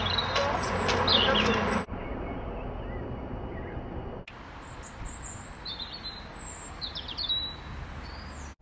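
Small songbirds chirping in short high calls and trills over steady outdoor background noise. The background drops abruptly about two seconds in and changes again about four seconds in, and most of the chirping comes in the second half.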